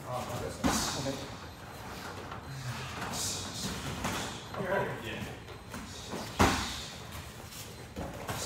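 Kickboxing sparring: gloved punches and kicks landing with short thuds, and one sharp, loud strike about six and a half seconds in. Voices talk quietly in between.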